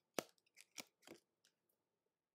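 Football trading cards being handled and flipped through: several short, crisp snaps and clicks in the first second and a half, the first the loudest.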